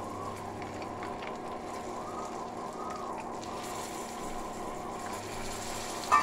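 Melted butter and spices sizzling steadily in a stainless steel kadai on an induction cooktop, with halved hard-boiled eggs frying in it, over a faint steady low hum.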